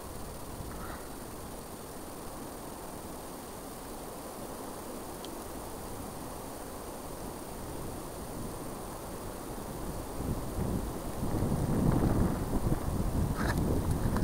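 Wind on the microphone: a steady low rush that swells into louder, uneven gusts over the last few seconds.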